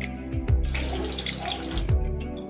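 Stuffed bitter gourds sizzling in hot oil as they are laid into the pan, a hiss for about a second in the middle, over background music.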